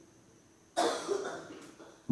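A single cough about three-quarters of a second in, starting sharply and fading over about half a second.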